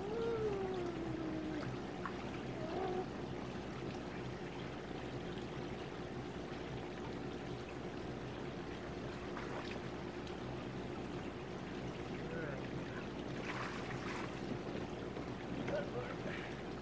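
Water pouring and running steadily during a dog's bath. A dog whines briefly with a falling pitch at the start, and again shortly about three seconds in.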